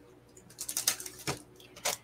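Light handling sounds of paper and card on a tabletop: soft rustles and a few short taps and clicks as fingers press a watercolour-paper panel down onto a card base, starting about half a second in.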